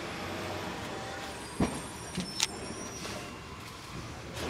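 Steady outdoor background noise, with one sharp knock about a second and a half in and a couple of fainter clicks soon after.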